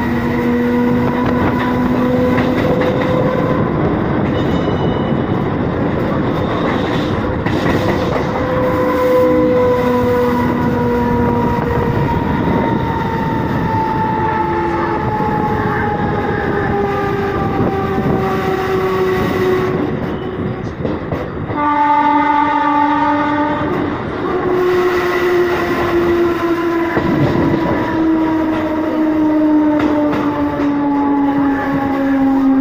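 Mumbai suburban local electric train running on the tracks, heard from an open doorway: a steady rumble of wheels on rail with thin whining tones from its electric drive that slowly fall in pitch. About 22 seconds in, a train horn sounds for roughly three seconds.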